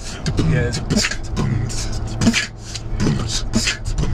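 Beatboxer demonstrating mouth-made flam snares, two snare sounds such as a "PF" and a "K" landing almost together, in a run of sharp strokes about two a second. A car's steady low running hum sits underneath, heard inside the cabin.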